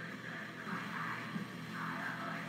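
Faint sniffing: a man breathing in twice through his nose over a glass of beer, taking in its aroma.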